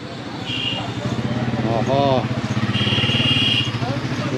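Motorcycle engine running nearby with a fast, steady low putter that grows louder, amid the voices of a busy street. Two short high tones sound, one early and a longer one about three seconds in.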